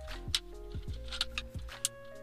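Background music with held notes, over which an Audi A3 8V's round plastic dashboard air vent is slid back into its housing with a few sharp clicks, the loudest about a third of a second in.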